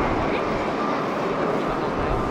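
Jet engines of a Boeing 787 airliner at takeoff thrust as it climbs away just after liftoff, heard as a steady, even noise.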